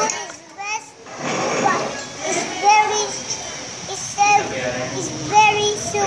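A young child's voice and women's voices, with laughter, unclear sounds rather than words.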